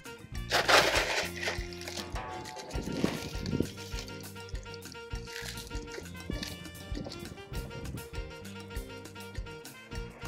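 Background music over LECA clay pebbles being scooped and poured into a plastic pot, with a loud rattling pour about half a second to a second and a half in and scattered clinks of pebbles after.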